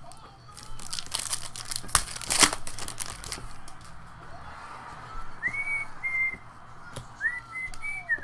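Foil trading-card pack wrapper crinkling and tearing as it is opened by hand. In the second half, a person whistles a few short notes.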